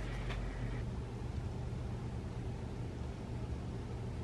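Quiet room tone: a steady low hum under a faint hiss, with no distinct sounds.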